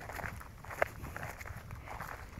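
Footsteps crunching irregularly over the ground, with one sharper crunch a little under a second in, over a low wind rumble on the microphone.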